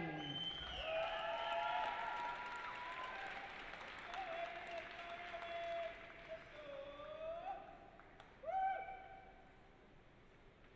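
Applause from a small audience, thinning and fading out, with long whooping cheers from spectators over it; a last short whoop comes near the end.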